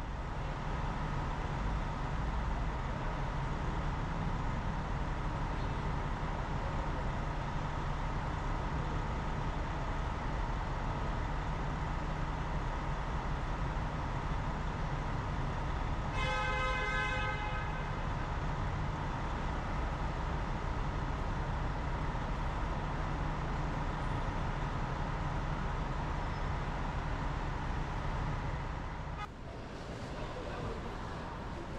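Steady low hum of an idling coach bus's diesel engine, with one short vehicle horn toot a little past halfway through.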